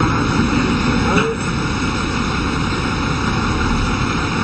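Steady, loud running noise of a military truck's engine, with faint voices about a second in.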